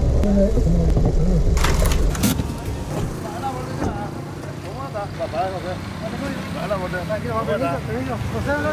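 A car's engine and cabin rumble low for about the first two seconds, with a few short knocks as it stops, then men's voices exchanging greetings.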